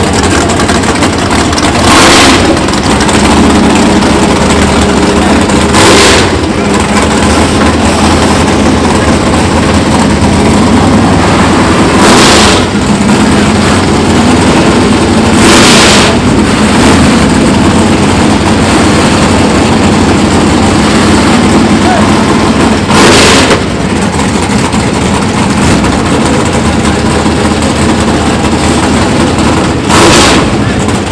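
Drag car's big engine idling loud and steady while staged at the line, with five short rushing bursts that break over it at uneven intervals.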